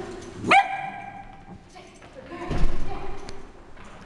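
A dog gives a single short, high bark about half a second in. About two and a half seconds in there is a dull thump.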